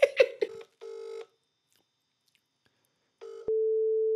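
A short burst of laughter, then telephone line tones from the phone's speaker: a short tone about a second in, and after a quiet gap a steady, even tone that starts about three and a half seconds in and is the loudest sound here.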